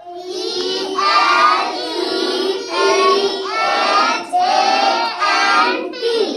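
A group of schoolgirls chanting in unison, spelling out 'elephant' letter by letter in a drawn-out, sing-song classroom chant.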